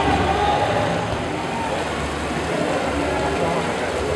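Outdoor ambience: indistinct voices over a steady low rumble of vehicle engines.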